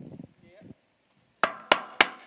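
Knuckles rapping on a hard, hollow surface: three quick door-style knocks near the end, acting out someone knocking at a door.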